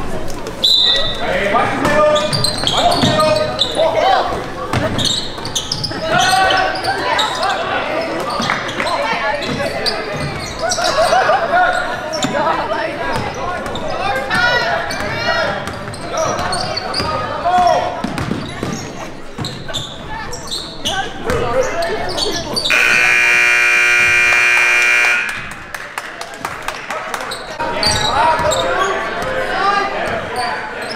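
Basketball game sounds in a reverberant gym: a ball dribbling, sneakers squeaking and players and spectators calling out. About three-quarters of the way through, the scoreboard horn blares as one steady tone for about two and a half seconds, then play resumes.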